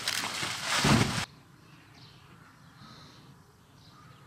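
Heavy plastic bags rustling and thudding as they are lifted into the back of a van, ending abruptly about a second in. Then faint outdoor quiet with a few distant bird calls.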